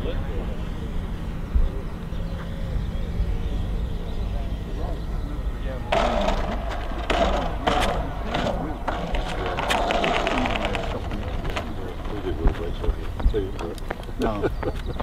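Radio-controlled model airplane landing on a rough concrete runway: a louder rattling, scraping roll with many sharp clicks from about six to eleven seconds. Wind rumbles on the microphone throughout.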